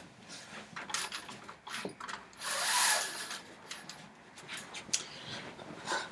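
A window blind being pulled shut: a rustling, whirring draw lasting about a second near the middle, among fainter knocks and rustles.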